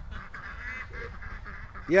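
Faint calls from a flock of domestic ducks over low outdoor background noise. A man's voice starts right at the end.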